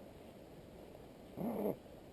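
A man's short voiced grunt, about a third of a second long, rising then falling in pitch, about one and a half seconds in; otherwise faint outdoor background.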